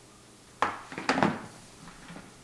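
Lid of a round cardboard hat box being put back on and handled: a sharp knock about half a second in, then a quick run of knocks and rubbing over the next second.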